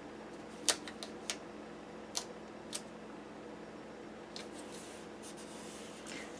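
Light, scattered clicks and ticks of a sticker being handled and pressed onto a paper planner page with fingers and a small metal tool, over a faint steady hum. There are about eight short ticks, bunched in the first three seconds and again near the end.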